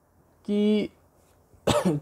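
A man's single short cough near the end, loud and sudden.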